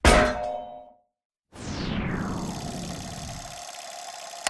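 Logo-animation sound effects: a sharp metallic clang at the start rings out and dies within a second. After a brief silence, a whoosh falls in pitch and settles into a held ringing tone over a low rumble, fading near the end.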